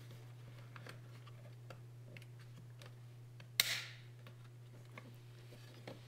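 Small plastic clicks and handling noise as a wiring harness connector is plugged into a master power window switch pack, with one sharper click and a brief rustle about three and a half seconds in. A low steady hum runs underneath.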